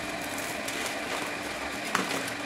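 Dry instant noodles being crumbled by hand into small pieces, a faint crackle over a steady background hum, with one sharper crack just before the end.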